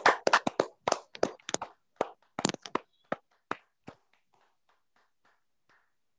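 Hands clapping hard and fast, the claps coming irregularly, then thinning out and fading until they stop about four seconds in.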